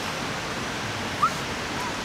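Steady, even background noise of a city at night, with one brief short rising chirp a little after a second in.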